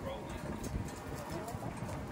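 Faint voices of people talking in the background, with no clear hammer strikes.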